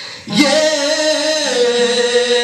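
A man singing one long held note into a microphone, starting about half a second in and stepping down to a lower pitch partway through.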